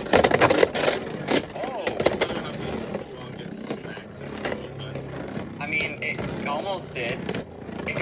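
Two Beyblade Burst spinning tops battling in a plastic stadium: sharp plastic clacks as they collide, several in the first second and scattered after, over a steady whir of the spinning tips on the stadium floor.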